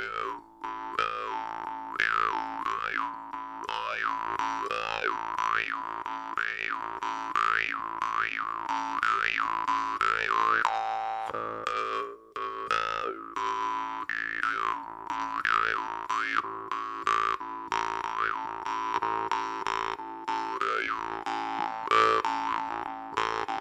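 Jaw harp played in a slow rhythmic groove: a steady buzzing drone struck by repeated plucks, its bright overtones swept up and down by the player's mouth about once a second. There is a brief break about halfway through.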